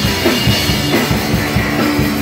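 Live rock band playing loud: drum kit keeping a steady fast beat under electric guitar and bass.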